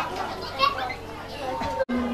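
Indistinct talking and children's voices in a room, with no clear words. The sound drops out abruptly for an instant near the end.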